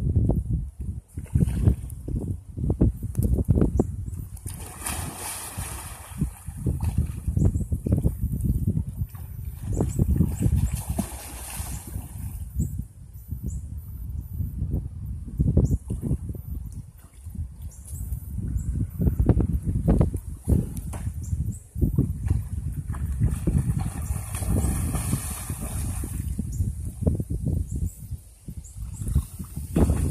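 Water sloshing and splashing as a person swims across a muddy bayou, in swells of a second or two, over an irregular low rumble.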